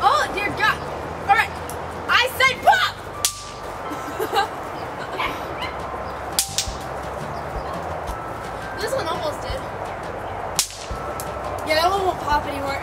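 Snap pops (bang snaps) thrown onto concrete, going off with three sharp cracks about three, six and a half and ten and a half seconds in.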